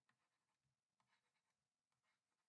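Near silence, with a few extremely faint short ticks about a second in, such as a stylus makes on a drawing tablet.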